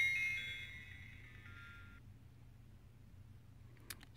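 ODRVM budget action camera's power-on jingle: a short multi-note electronic chime from its small built-in speaker, loudest at the start and fading out within about two seconds. A faint click follows near the end.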